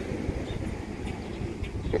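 Wind buffeting a phone microphone outdoors: a steady low rumble.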